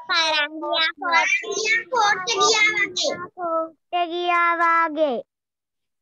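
A child's high voice speaking in a drawn-out, sing-song way. It ends on a long held note that falls off about five seconds in.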